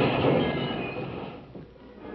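Radio sound effect of a speeding car with tyres screeching as it takes a corner. The sound fades away and is almost gone about a second and a half in.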